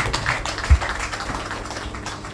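Irregular taps and clicks with one heavier low thump under a second in, over a steady low hum.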